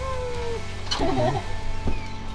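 Background music, with a short pitched squeal at the start that rises and then holds, and a rougher, shorter squeal about a second in.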